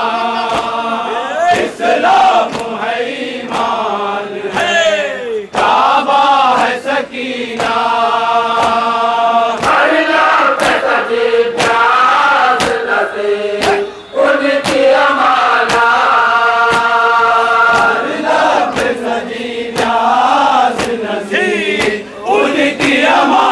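Men chanting a nauha, the Shia lament for Karbala, in held sung lines, with the sharp hand slaps of matam chest-beating keeping a steady beat a little more than once a second.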